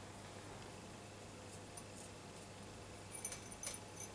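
A faint steady hum, then, about three seconds in, a handful of light clicks and small rattles as thermocouple probe wires and a probe are handled against a glass beaker.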